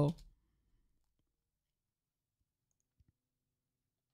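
The end of a man's spoken phrase, then near silence broken by a few faint, isolated clicks.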